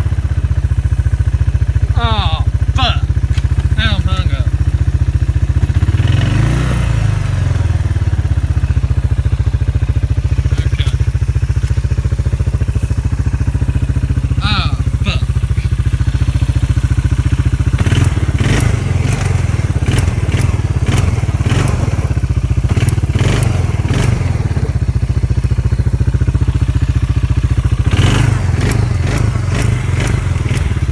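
Side-by-side UTV engine running with a steady low drone as it drives a rough woods trail. Sharp knocks and clatter from the vehicle jolting over the ground come in clusters, most of them in the second half.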